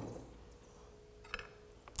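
Quiet room tone with a faint click a little past the middle.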